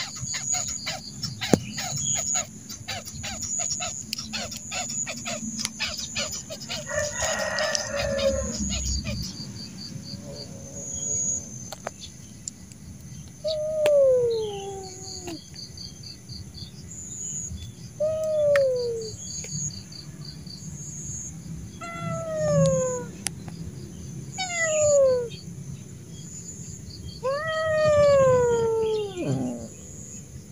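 Stray tortoiseshell cat meowing: five drawn-out calls in the second half, each falling in pitch, the last the longest and loudest. Insects chirp steadily behind them.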